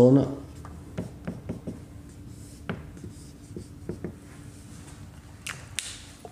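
Felt-tip marker writing on a whiteboard: a run of short, irregular taps and strokes as the letters are written and underlined, over a faint steady hum.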